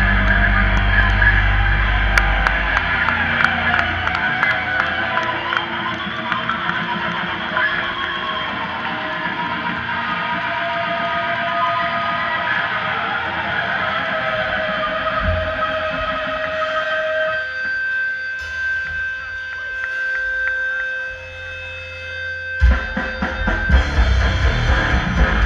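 Brutal death metal band playing live through a PA. The full band with drums plays for the first couple of seconds, then drums and bass drop out, leaving distorted electric guitar with effects holding long, sustained notes. The full band crashes back in near the end.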